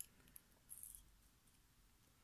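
Near silence, with a faint click at the start, another small tick, and a brief faint rustle just under a second in, from fingers handling a small metal lock cylinder with its key.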